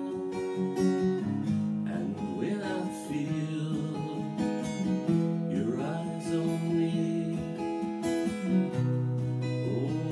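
Acoustic guitar strummed and picked, playing chords as a song accompaniment.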